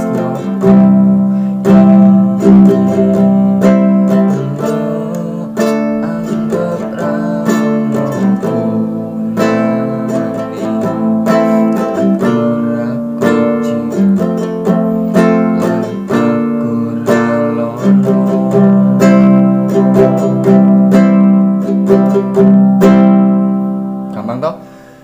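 Small nylon-string guitar strummed steadily in a repeating rhythm, changing through the chords C, G, A minor, E minor, F, C, F and G. The strumming stops near the end.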